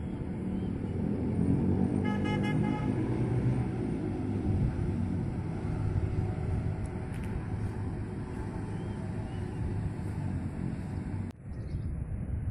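Steady rumble of motor traffic, with a short vehicle horn toot about two seconds in.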